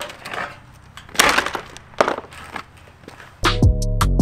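Steel boat-trailer frame being handled on sawhorses: uneven scraping and knocking of metal, loudest a little over a second in, with a sharp knock about two seconds in.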